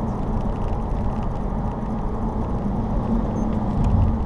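Honda New Civic LXS 1.8 16V four-cylinder driving on the road, heard from inside the cabin: a steady mix of engine hum and tyre and road noise, with a faint low engine tone underneath.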